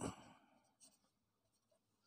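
Near silence with the faint scratch of a ballpoint pen writing on paper.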